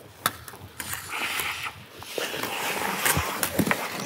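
Ice skates scraping and gliding on rink ice, with a few sharp clicks of hockey sticks striking a small ball and the ice.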